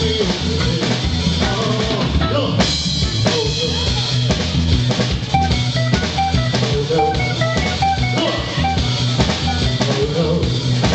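A live band with a full drum kit, electric guitar and keyboards playing neo-soul, the drums prominent. A cymbal crash comes about two and a half seconds in, and short repeated high notes sound in the second half.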